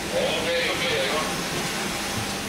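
Steady rushing hiss of air, with muffled voices in the first second.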